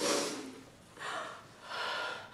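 A woman's sharp gasping breath at the start, then two shorter, breathy sounds with a little voice in them, about a second in and near the end.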